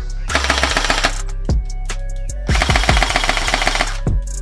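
Two bursts of rapid automatic gunfire, the first from just after the start to about a second in, the second from about two and a half seconds to near the end, over music with a deep steady bass.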